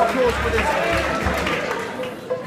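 Many people talking at once in a large hall, with a low rumble underneath that stops near the end.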